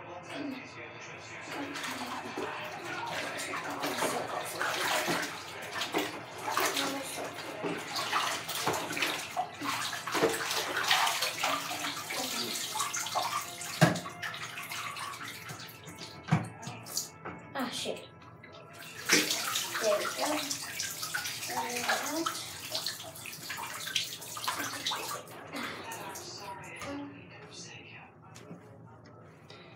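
Water splashing and sloshing in a bathtub in irregular bursts as a vinyl doll is moved about and lifted out, with a sharp knock about fourteen seconds in.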